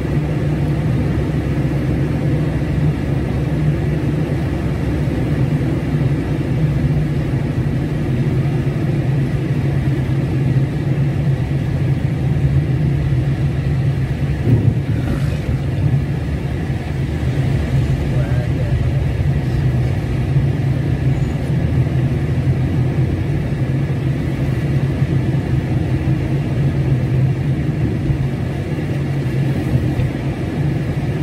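Engine and road noise of a moving car heard from inside the cabin: a steady low drone.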